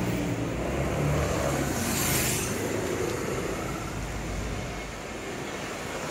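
Road traffic on a city street: cars and a van driving past close by, a steady engine and tyre noise with one vehicle swelling past about two seconds in.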